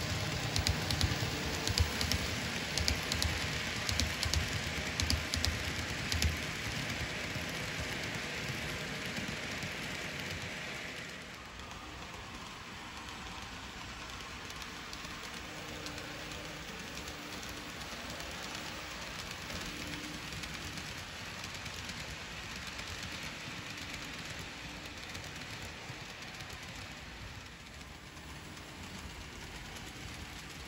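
N scale model train, an Amtrak-liveried diesel locomotive pulling passenger cars, running along the layout track: a steady whir of motor and wheels with quick clicks over the first several seconds. It drops to a quieter, even hiss about eleven seconds in.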